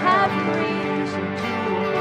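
Live worship music: acoustic guitar and a Roland keyboard playing held chords, with the tail of a sung line at the very start.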